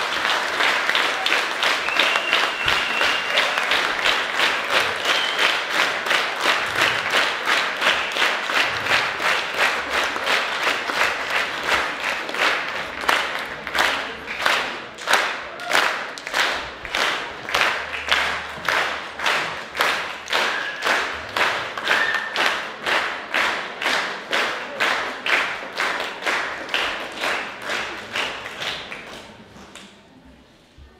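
Audience applause that settles into steady rhythmic clapping in unison, about two to three claps a second, dying away near the end.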